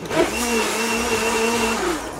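Electric blender motor spinning up, running steadily for about a second and a half, then winding down and stopping.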